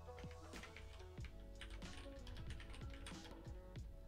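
Keys being typed on a computer keyboard in a steady run of quick clicks, over quiet background music.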